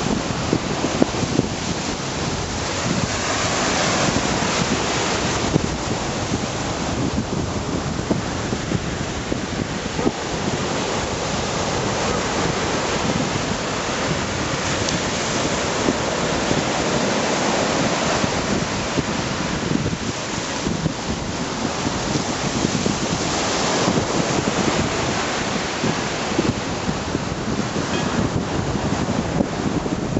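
Gulf surf washing onto the beach, rising and falling with each wave every few seconds, with wind buffeting the microphone.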